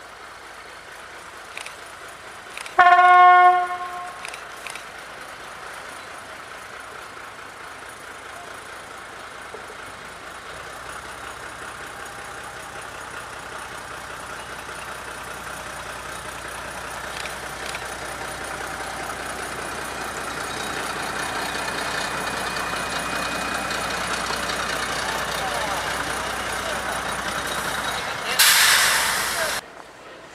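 Narrow-gauge diesel locomotive, a Polish Lxd2, sounds its horn once, a single note about a second long, a few seconds in. Its engine then grows steadily louder as it approaches and passes close by. Near the end a loud hiss lasts about a second before the sound cuts off.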